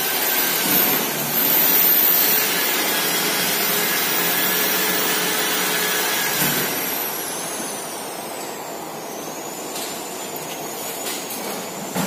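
A handheld power tool's electric motor running with a loud airy whine at high speed, then dropping in pitch about six seconds in and running on slower and unevenly.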